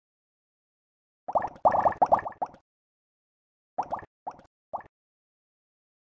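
Water drops plopping: a quick run of several drops, then, after a pause of about a second, three separate drops.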